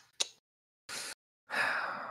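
A person breathing into a close microphone: a short hiss of breath about a second in, then a longer breathy exhale, a sigh, starting about a second and a half in.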